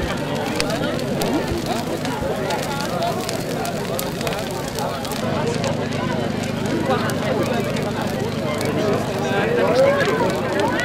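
Indistinct chatter of a crowd talking at once, with scattered crackles and pops from a large wood bonfire burning.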